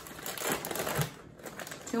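Plastic packaging crinkling and rustling as frozen fish fillets in their wrapping are handled, with scattered light clicks and a soft knock about halfway through.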